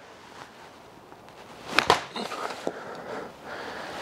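Golf iron striking a ball off an artificial-turf hitting mat in a slow practice swing: one sharp click about two seconds in, followed by faint rustling.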